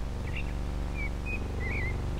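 A few short, high bird chirps, the last one warbling, over a steady low hum and hiss.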